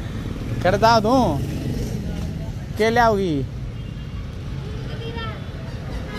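Steady street traffic rumble from passing motorcycles and cars, with a person's voice calling out briefly twice, about one and three seconds in.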